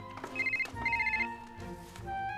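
Telephone ringtone: a repeating electronic melody with two quick trilled beeps in each phrase, the phrase coming round about every two and a half seconds.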